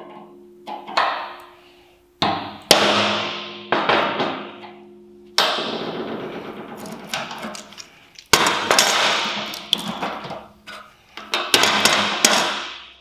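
Hammer striking a steel punch through a 3D-printed template to mark hole centres on 5 mm steel plate: a series of irregularly spaced metallic blows, each followed by a ringing decay.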